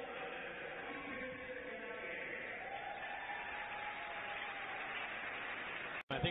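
Steady crowd hubbub in an ice hockey arena, with faint, echoing and indistinct voices or public-address sound.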